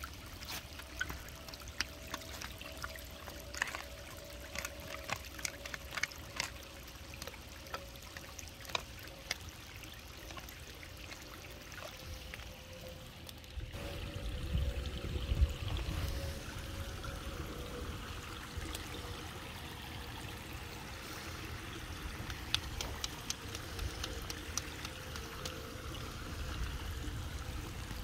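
Shallow water flowing out of a metal drain grate and trickling across a pebble-lined stream bed, with scattered small clicks of stones during the first half and a short low rumble about halfway through.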